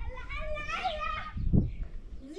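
A young child's high-pitched voice speaking for about a second, then a dull low thud.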